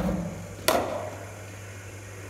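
Cricket bat striking a leather cricket ball once, a sharp crack about two-thirds of a second in, with a short echo in the indoor net hall. A steady low mains hum runs underneath.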